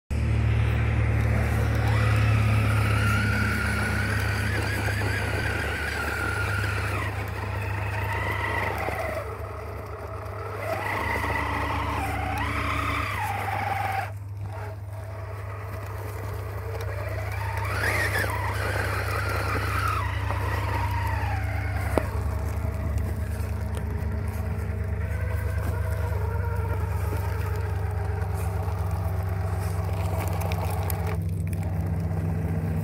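Redcat Gen 8 RC rock crawler's electric motor and gearbox whining, the pitch rising and falling with the throttle as it climbs over rocks, over a steady low rumble of traffic. A single sharp click about two-thirds of the way through.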